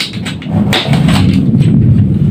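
A low engine rumble swells about half a second in and holds, with a sharp click or two of a blade cutting foam on a cutting mat in the first second.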